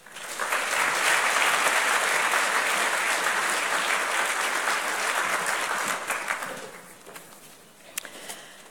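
Audience applauding: the clapping builds quickly, holds steady, then dies away about six to seven seconds in.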